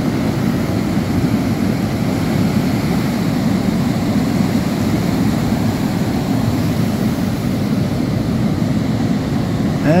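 Steady rushing noise of ocean surf breaking on a rocky shore, low and even with no pauses.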